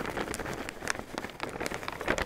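Potting soil (cactus mix) pouring from a bag into a low ceramic planter bowl: a steady patter of many small grains landing.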